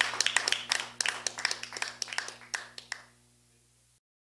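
A small group clapping, the applause thinning and dying out about three seconds in, leaving only a faint steady hum.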